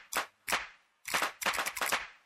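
Sharp, clap-like percussion hits in a break of a Tamil film song. A few come about a third of a second apart, then a quick run of hits follows in the second half.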